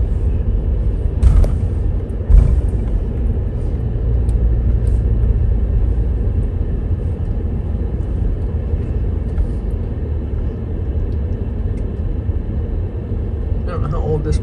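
Steady low rumble of a vehicle driving slowly across a covered wooden bridge, heard from inside the cab. Two sharp thumps about a second apart near the start, as the wheels go onto the bridge deck.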